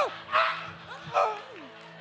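A man's short wordless yells: a few sharp cries that fall in pitch, with breathy bursts between them, over a faint sustained keyboard chord.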